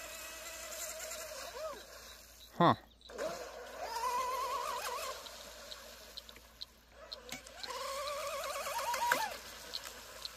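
Distant whine of an electric RC outrigger boat's brushless motor and low-pitch propeller at speed on a 3S pack, warbling in pitch and swelling twice as the boat hops across the water instead of running flat.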